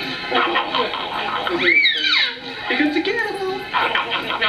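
A baby squealing and babbling, with one high squeal about two seconds in that rises and falls in pitch, amid other voices.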